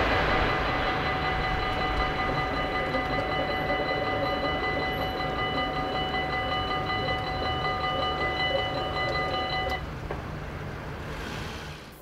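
Dutch level-crossing warning bell ringing steadily while the barriers rise, stopping about ten seconds in. Under it, the low rumble of the just-passed train fades away.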